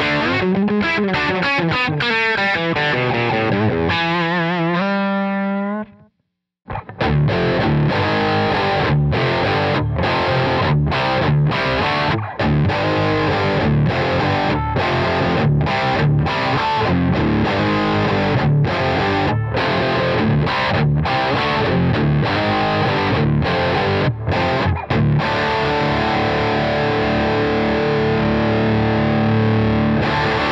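Electric guitar through a distorted amp, miked with Royer ribbon microphones. It opens with a phrase of wide, wavering vibrato that ends on a held note, then stops briefly about six seconds in. A driven riff of chopped chords follows and ends on a long held chord that cuts off near the end.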